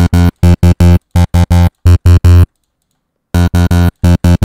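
Distorted synth bass from Bitwig's Polymer wavetable synth, run through Bitwig's Amp device with its speaker-cabinet modelling engaged, playing a repeated short low note. It stops for about a second in the middle, then starts again, while different cabinet models are being tried.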